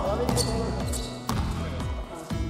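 A basketball bouncing on a wooden gym floor, two sharp bounces about a second apart, over steady background music.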